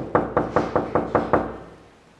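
Knuckles knocking on a wooden apartment door: about seven quick, evenly spaced knocks, roughly five a second.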